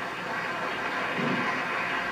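Steady crowd noise from a packed council chamber, heard as an old video recording played back over speakers into a room.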